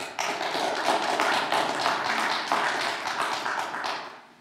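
A congregation applauding: many hands clapping at once, starting suddenly just after a piece of music ends and dying away near the end.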